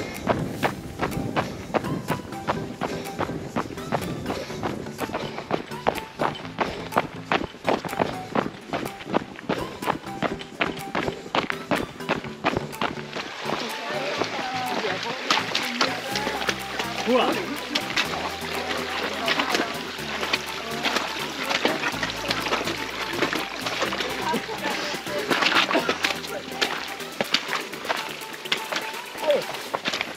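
Upbeat background music with a bass line that comes in about halfway, over a trail runner's quick, rhythmic footsteps.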